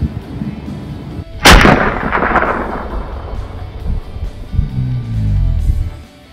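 A single rifle shot about a second and a half in, its report echoing and fading over the next second or so.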